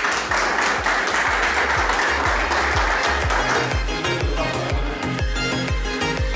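Applause from a small group, fading out about three and a half seconds in, over background dance music with a steady beat of about two a second.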